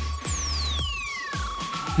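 Electronic scanning sound effect: a high synthetic tone sliding steadily down in pitch over about two seconds, with a steady electronic tone held underneath. A low pulsing electronic music bed plays throughout.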